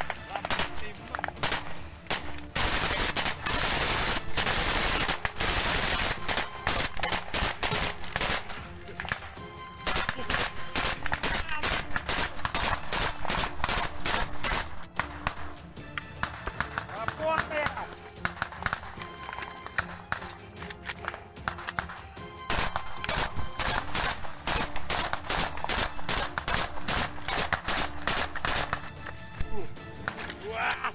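Automatic gunfire in a firefight, rapid shots in long strings: an unbroken burst a few seconds in, more strings from about ten to fifteen seconds, and another long run near the end.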